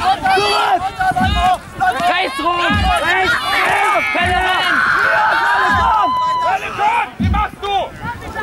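Many young voices shouting and calling out over one another. Under them a low drum beat thumps steadily about every one and a half seconds: the Jugger stone count that times the game.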